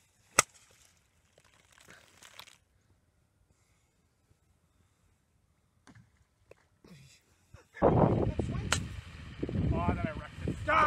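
Golf iron striking down into a shallow creek to splash the ball out: one sharp smack about half a second in, followed by faint scattering noise for about a second. Near the end a man laughs loudly.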